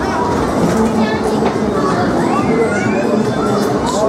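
Crowd hubbub at a fairground ride: many overlapping voices over a steady din, with a voice-like call rising and falling about halfway through.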